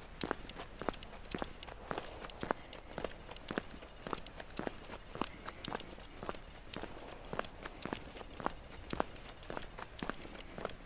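Footsteps of a person walking, crunching at a steady pace of about two steps a second.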